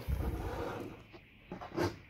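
Clear plastic packaging film and cardboard rustling as a plastic toy cube is pulled free of its box, fading out about a second in. A brief faint sound follows near the end.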